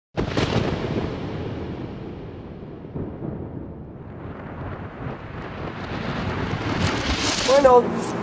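Thunderclap sound effect: a sudden crack that rumbles away over a few seconds, then a second swell of rumble building up. A voice starts speaking near the end.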